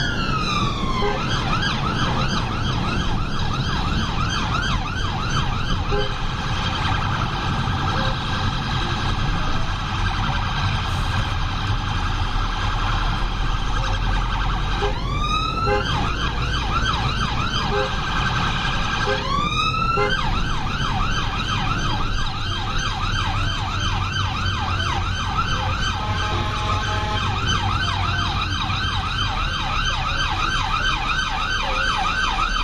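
Emergency vehicle siren heard from inside the cabin, mostly on a fast yelp. It switches briefly to a slow rising wail about 15 and 19 seconds in. Engine and road rumble sits underneath.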